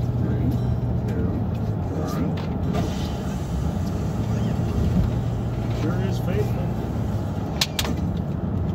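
Steady low drone of engine and road noise inside a moving car's cabin, with faint voices underneath. Two sharp clicks come close together near the end.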